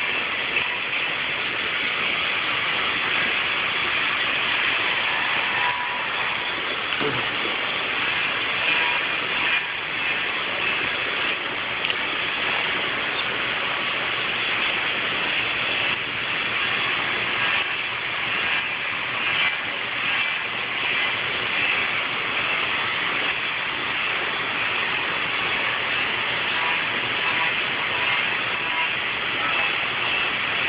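Steady machinery running in a stone workshop: a continuous, even mechanical noise with a faint steady hum.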